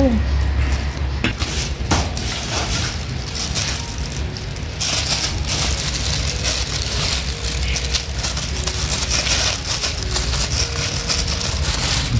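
Plastic-gloved hand working sticky rice-flour dough out of a stainless steel bowl onto a floured steel tray: a few light knocks early, then crinkling and rustling of the plastic glove and dough from about halfway through, over a steady low hum.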